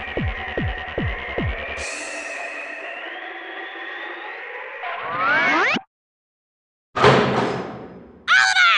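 Cartoon sound effects and music for a super-speed run around the Earth into the past. Repeated falling whooshes, about two and a half a second, play over a slowly rising whine. Later a rising sweep cuts off suddenly, and after a second of silence a loud burst fades away.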